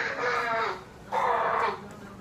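A child's voice giving two high, drawn-out cries, the second about a second in.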